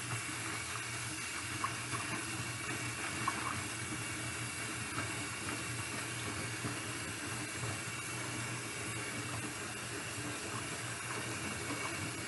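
Kitchen tap running steadily into a stainless steel sink filled with water, with a few faint splashes as a hand moves submerged hair up and down.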